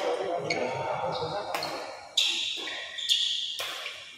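Badminton rally in a large hall: about six sharp racket strikes on the shuttlecock in quick succession, the loudest about halfway through, each with a short ring in the hall.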